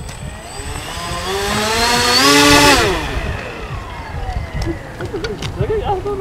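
Twin electric motors of a hex-wing RC plane throttled up, the whine rising in pitch to its loudest about two and a half seconds in, then cut, the pitch falling away as the propellers spin down.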